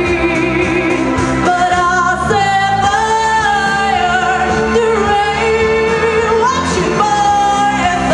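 A girl sings a pop song into a handheld microphone over a recorded backing track, amplified through a PA, holding long notes in the middle of the phrase.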